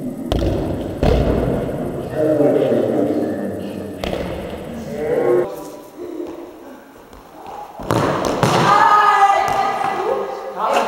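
Football kicked in an echoing sports hall: a thud of the shot about half a second in, another thud a moment later, and further thuds around four and eight seconds. Young male voices call out between the kicks.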